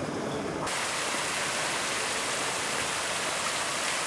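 Tiered stone fountain splashing, with water spilling from its basin rim and jet in a steady rush. The rush comes in suddenly about half a second in.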